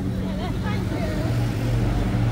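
Steady low engine hum of road traffic, with faint voices of people close by.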